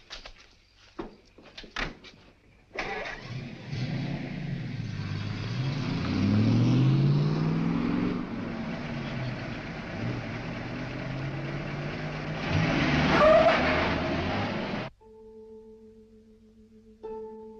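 A vintage sedan's engine comes in suddenly about three seconds in and the car pulls away, its pitch rising as it accelerates, then runs on steadily. It grows louder near the end and cuts off abruptly, leaving only a faint steady hum.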